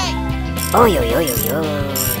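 Ratchet clicking sound effect as a toy screwdriver is turned into a toy excavator, over background music. About a second in there is a short voice-like sound that glides up and down in pitch.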